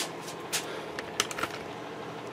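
A handful of light clicks and knocks, spaced unevenly, against a quiet room background: a video camera being picked up and handled, close to its microphone.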